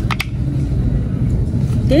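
Steady low rumble of background and handling noise on a phone microphone. Two short clicks just after the start as a plastic body wash bottle is handled.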